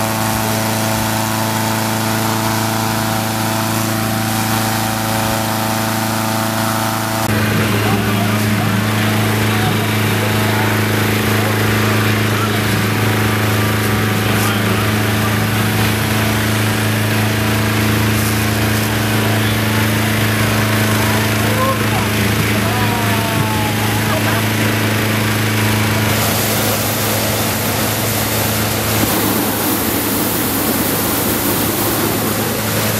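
A hot-air balloon's petrol-engine inflator fan running steadily at constant speed. Its note shifts abruptly about seven seconds in.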